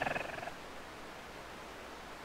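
A man's short raspy vocal sound with a fast rattle, ending about half a second in, followed by quiet room tone.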